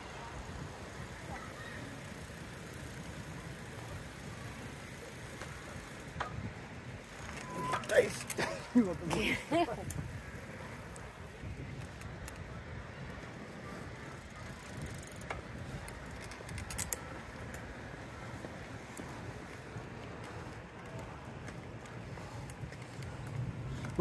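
Outdoor ambience with a steady low rumble of movement and wind on the microphone. Indistinct voices are heard briefly about a third of the way in, with a few light clicks.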